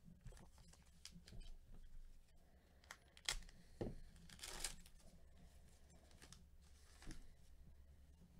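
Plastic trading-card pack wrapper being torn open by gloved hands: faint rustles and clicks, a sharp snap a little after three seconds, then a short rip around the middle.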